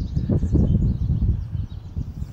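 A loud, uneven low rumble, with faint bird chirps in the background.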